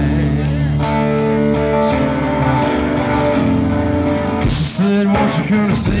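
Live rock band playing an instrumental passage: electric guitar chords held over bass, with regular cymbal strikes from the drums. The music changes about four and a half seconds in, shortly before the vocals return.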